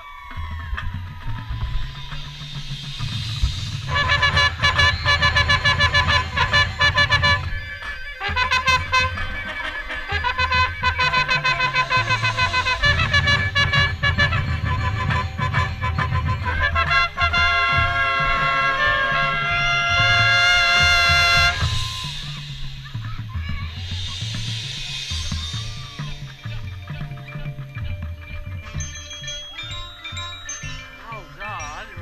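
Marching band playing, with brass and drums over a front ensemble of bass drums, gong and mallet percussion, and a trumpet close by. It starts softly, swells to full loud brass about four seconds in, and drops to a softer passage about two-thirds of the way through.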